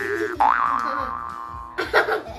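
Cartoon 'boing' sound effect: a bright tone swooping sharply upward in pitch, heard twice, the second swoop levelling off into a held note that stops shortly before the end, where a burst of voices or laughter starts.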